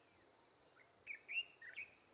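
Faint bird chirps: a quick run of four short, high notes about a second in, over quiet outdoor background.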